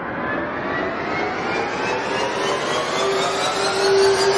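Cinematic riser sound effect: a building rush of noise with several tones sliding steadily upward in pitch and growing louder, joined by a steady low tone near the end.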